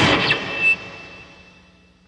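A hardcore punk band ending a song: the full band cuts off abruptly, a last hit comes about two-thirds of a second in, then a high ringing tone and the remaining ring-out fade away to silence.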